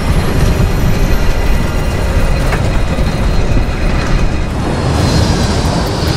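Dramatic music over the loud, dense rumble of a twin-jet airliner's engine, a thin high whine rising in pitch at the start as more power is called for.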